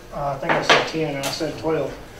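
A man's voice speaking in a lecture room, with a couple of brief sharp sounds around the middle.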